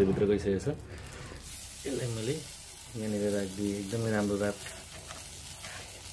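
Marinated chicken leg sizzling on a wire grill over a red-hot fire, a steady high hiss. A low voice sounds three times over it, briefly near the start, again around two seconds in, and longer from about three seconds in.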